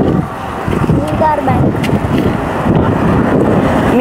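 Wind rumbling on the microphone over road traffic noise, with a brief faint voice about a second in.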